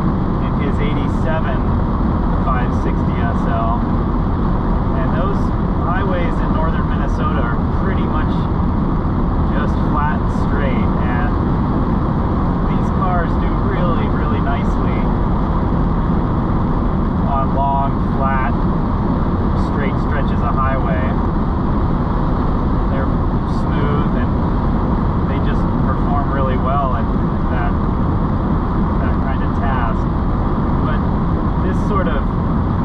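A 1988 Mercedes 560SL's V8 cruising steadily on the open road, engine rumble mixed with tyre and wind noise at an even level, with short high chirps scattered over it.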